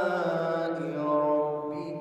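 A man's voice chanting a Quran recitation in the melodic tajwid style, holding long notes that slowly fall in pitch.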